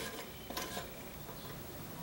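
A single light click from a rice cooker's cook-switch lever about half a second in, over faint room noise.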